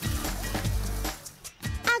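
Water splashing as legs kick through a shallow river, over background music; the splashing fades about a second and a half in, with one more short splash just after.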